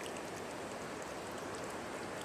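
Steady rush of a river's flowing water, running high after recent rains.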